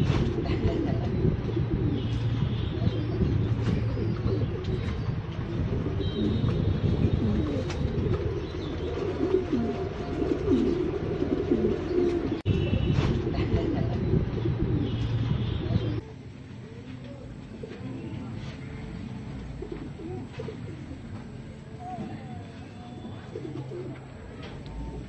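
Many fancy pigeons cooing at once in a caged loft, a dense chorus of overlapping low coos. About two-thirds of the way through it drops suddenly to a quieter level, with fewer, fainter coos.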